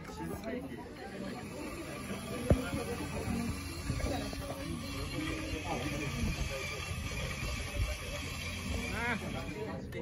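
Indistinct chatter of voices with music playing underneath, and a single sharp knock about two and a half seconds in.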